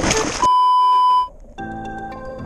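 Water rushing and splashing over a camera as it plunges under the sea surface, cut off by a loud steady electronic beep lasting just under a second. Background music begins near the end.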